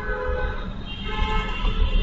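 Steady low rumble with horn-like pitched tones sounding twice, once at the start and again about a second in, like vehicle horns in street traffic.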